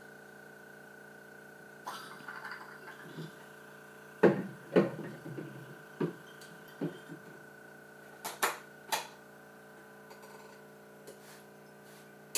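Glass wine bottles knocking and clinking against a plywood filler stand as they are handled and set in place: a scatter of sharp knocks, loudest two about four to five seconds in. A steady machine hum runs underneath.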